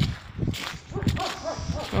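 Footsteps on wet snow and slush on an unpaved road, a series of irregular low thuds, with a faint pitched sound over them in the middle.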